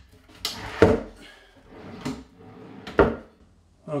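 Wooden drawer being slid back into its cabinet on metal drawer slides and pushed closed: a sliding, rolling rush with a sharp knock about a second in and another knock near three seconds.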